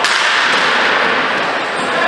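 A single sharp crack of a ball hockey stick striking the ball at the very start, followed by a steady wash of noise that echoes around the rink.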